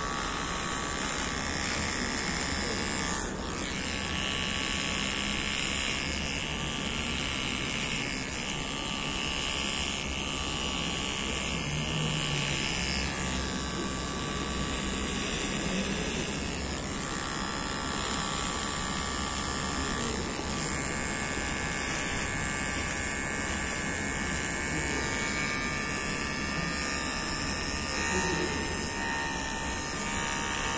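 A cordless electric razor running steadily, shaving off a man's beard.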